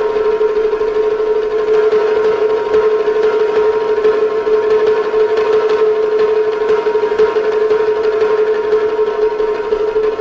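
A Chinese row drum (paigu) rubbed with the fingers on its head, drawing out one long, steady, siren-like tone that wavers slightly in pitch.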